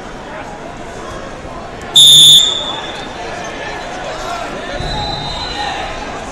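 A short, loud electronic buzzer sounds about two seconds in, marking the end of a wrestling period as the clock runs out. Crowd chatter fills a large, echoing hall around it.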